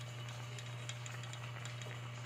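A pot of clams in broth at a rolling boil: faint bubbling with scattered light ticks and pops, over a steady low hum.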